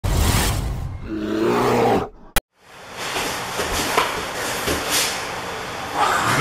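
Intro-logo sound effect: a whooshing roar with a brief pitched swell, cut off by a sharp click about two seconds in. After a moment of silence come steady room noise and a few soft scuffs and thumps of grappling on the mat.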